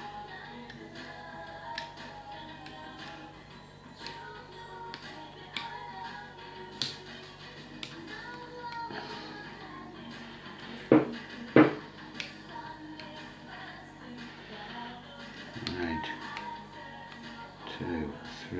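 Background music plays throughout, with scattered small metallic clicks from a disc-detainer pick turning the discs of a motorbike lock. There are two louder clicks about eleven seconds in.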